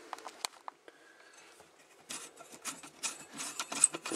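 Faint clicks and rubbing of fingers working the plastic cap of a panel-mount fuse holder to unscrew it, busier in the second half.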